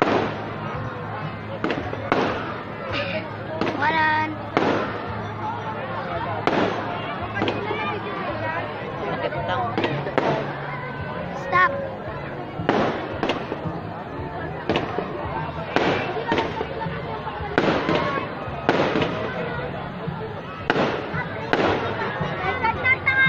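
Aerial fireworks going off overhead: a run of sharp bangs at uneven intervals, about one or two a second, with people's voices between them.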